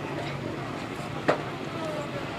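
Wheel loader's engine running low and steady while carrying a wrecked folk-race car on its forks, with a single sharp knock just over a second in.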